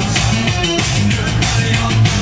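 Loud live band music with a driving drum beat.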